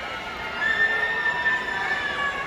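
Audience cheering, with one high-pitched voice holding a long scream for over a second.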